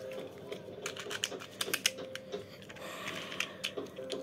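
Battle spinning tops launched into a plastic bowl arena, clattering with irregular sharp clicks as they knock against each other and the bowl, over a faint steady whir.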